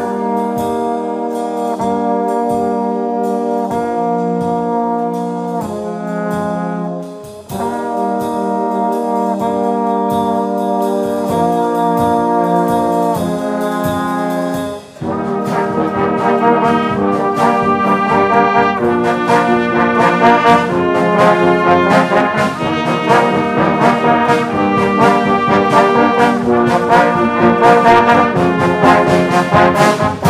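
Brass band of trumpets, tubas and baritone horns playing slow held chords that change every second or so, with a short break about a quarter of the way in and another halfway. From halfway on it plays a louder, busier passage with drum strokes.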